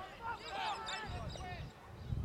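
Distant shouted calls from players and spectators across a rugby league field, with a low rumble underneath from about halfway through.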